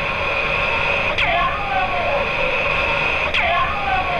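A hissy, static-laden EVP recording played back, with a steady high-pitched tone under it. A distorted voice in it is taken to say '¡Cuidado con el abuelo!' ('Beware of grandpa!'), with two swooping, falling sounds, one about a second in and one near the end.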